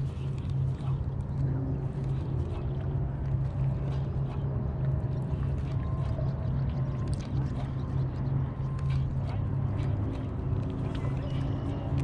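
A boat motor running at a steady low hum, with faint scattered ticks over it.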